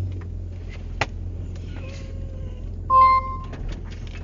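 A short electronic beep inside a van cabin about three seconds in, over the low steady hum of the running engine, with a sharp click about a second in.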